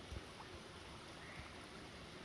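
Quiet bush ambience: a faint, even hiss with a couple of soft low knocks, one just after the start and one about a second and a half in.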